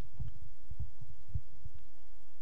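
A steady low hum with irregular low pulses, no speech.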